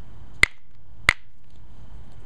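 Two sharp clicks, about two-thirds of a second apart, as a copper-tipped pressure flaker presses flakes off the edge of an Alibates flint preform.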